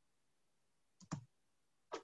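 Near silence, broken by two faint short clicks: one about a second in and one near the end.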